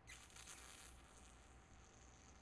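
Near silence: room tone with a faint, brief high hiss in the first second.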